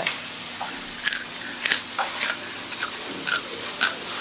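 Raw potato sticks frying in hot oil in a skillet: a steady sizzle with irregular crackles and pops.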